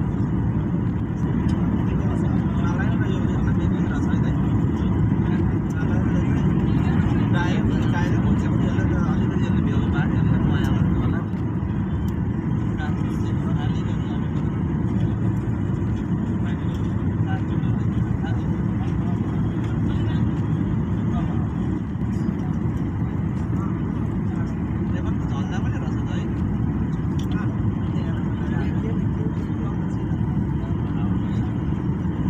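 Steady jet airliner cabin noise heard from a window seat in flight, a deep rumble of engines and airflow that drops slightly in level about eleven seconds in.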